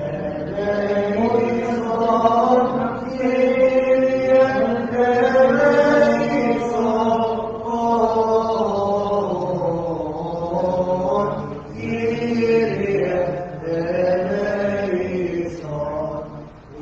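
Orthodox liturgical chant: singing voices holding long, slowly gliding phrases, with a brief pause between phrases about three-quarters of the way through.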